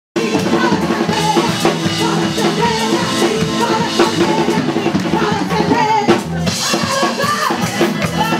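Upbeat worship chorus music: a drum kit keeping the beat under a woman singing into a microphone.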